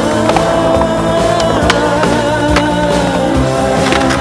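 Skateboard wheels rolling on skatepark concrete, with a few sharp clacks of the board, under a loud music track.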